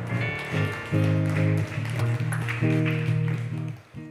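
Live band playing slow instrumental music under the sermon: held chords that change about once a second.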